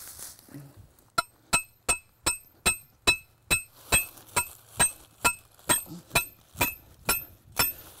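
Hammer striking a metal trap stake about sixteen times at a little over two blows a second, each blow with a short metallic ring, driving the stake into the ground to anchor a raccoon trap. The blows start about a second in and stop just before the end.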